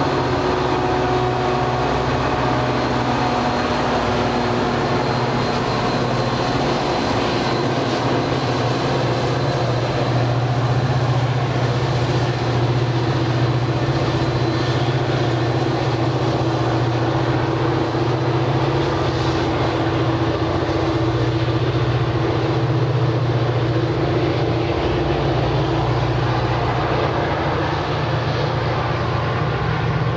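Metra diesel locomotive's engine running with a steady drone as the commuter train moves along the platform track and draws away.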